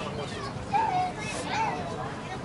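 Distant voices shouting and calling out across an open ballfield, with a louder call a little under a second in.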